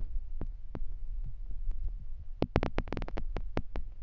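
Low steady hum from a handheld microphone through the hall's sound system, with scattered short clicks and knocks, thickest between about two and a half and four seconds in, typical of the microphone being handled.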